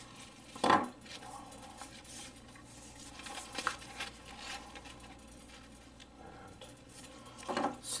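Metal folding pocket knives handled on a wooden tabletop, one set down and another picked up. There is a sharp knock under a second in, a lighter click around the middle, another short knock near the end, and quiet handling noise in between.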